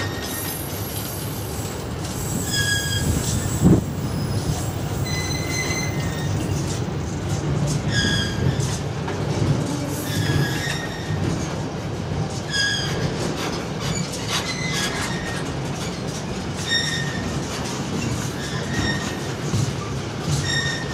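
A train of loaded intermodal freight wagons rolling past at close range, the wheels running steadily on the rails. Short high squeals from the wheels recur roughly every two seconds, and there is a single sharp clank about four seconds in.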